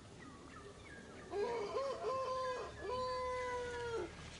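A pitched animal call: a run of short rising-and-falling notes, then one long held note that sinks slightly in pitch.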